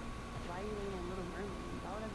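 A woman's voice, a short stretch of soft talk or murmuring, over a steady faint high-pitched tone and a low background hum.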